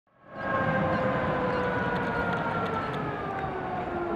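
Jungfraubahn electric rack-railway train moving slowly past, with a whine whose pitch falls gently over the rumble of its running gear on the rails.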